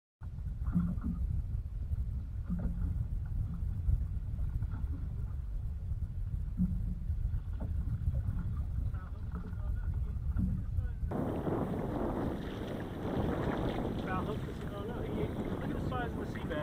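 Wind rumbling on the microphone aboard a boat on open ocean, a steady low rumble. About eleven seconds in it changes abruptly to a brighter, fuller wash of wind noise.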